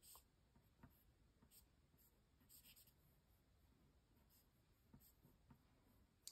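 Near silence with a few faint, brief scratches of a drawing stick on paper.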